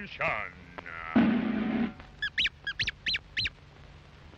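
Early cartoon soundtrack effects: a pitched swoop falling just after the start, a short rough blast about a second in, then a quick run of short high calls, each rising then falling in pitch.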